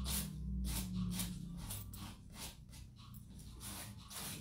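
Small sanding pad rubbed in short downward strokes along the edge of a box, trimming off excess glued silk tissue paper: a run of faint scratchy strokes, about three a second, getting softer toward the end.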